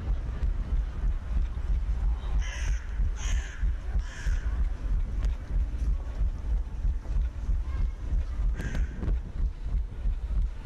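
A crow cawing three times in quick succession, then once more near the end, over a steady low rumble of wind on a running headcam's microphone.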